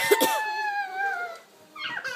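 A young child's long, high-pitched squeal, held steady and slowly falling in pitch, fading out about a second and a half in. A few knocks sound near the start.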